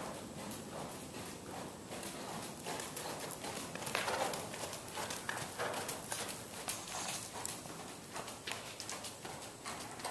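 Thoroughbred gelding's hooves beating a steady rhythm at the trot on the soft dirt footing of an indoor arena.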